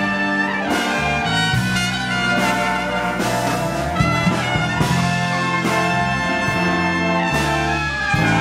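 Jazz big band playing live: trumpets, trombones and saxophones sound together in sustained chords, with the bass notes moving beneath them.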